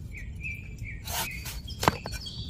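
Steel cleaver trimming the husk of a young green coconut against a wooden block: a short slicing swish a little after a second in, then a sharp chop near the end. A bird calls with a thin, steady whistle through the first half.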